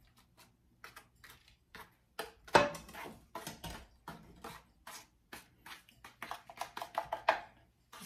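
A spatula scraping and tapping in a metal baking pan while spreading a thick brown sugar and butter topping, with a run of quick taps near the end. A louder clank about two and a half seconds in, as the skillet is set down on the stove top.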